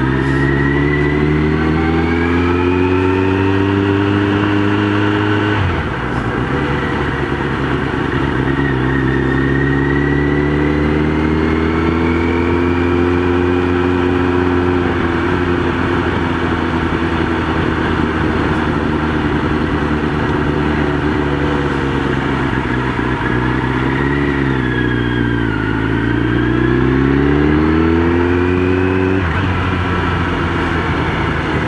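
Motorcycle engine running under way, picked up by a microphone inside the rider's helmet. Its pitch climbs as the bike accelerates, drops suddenly about six seconds in, then climbs again. It dips and wavers near the end before rising once more.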